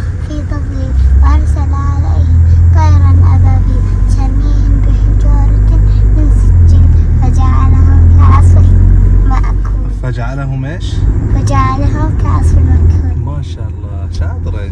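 Loud low rumble inside a moving car's cabin, swelling and easing several times, with a voice speaking over it.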